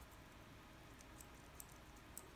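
Near silence: room tone with a few faint small clicks from hands handling a pistol frame.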